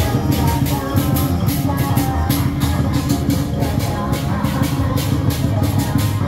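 Loud procession music with drums and a steady beat, accompanying the dance of giant deity-general puppets.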